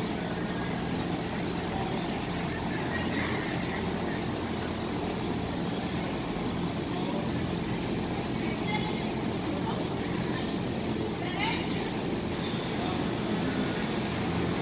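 Steady low hum of a large hall with distant, indistinct voices of people talking around the ring now and then.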